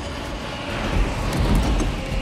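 Dense rumbling sound-design mix of a large cargo jet in flight, engine rumble and rushing air, with a short knock or thud about a second in as cargo pallets tumble out.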